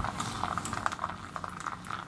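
Kettle water bubbling and hissing, with many small irregular crackles over a faint low hum.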